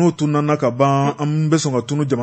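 A man's voice chanting in a sing-song way, holding one steady note for about half a second near the middle.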